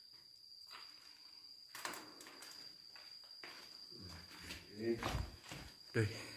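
Faint footsteps and scuffs on cave rock as someone walks, with a few louder knocks past the middle and a brief murmur of voice near the end. A thin, steady high-pitched whine runs underneath.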